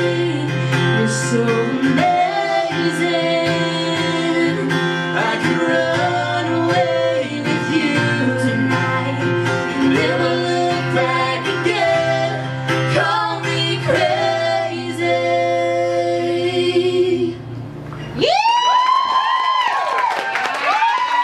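A woman singing lead with a man singing along over a strummed acoustic guitar. The song ends about 17 seconds in, and the audience breaks into whoops and cheering.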